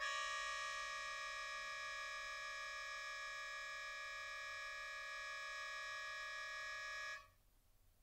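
A single held, unwavering chord of several high tones that starts abruptly and cuts off about seven seconds in, played in a small free-improvisation ensemble.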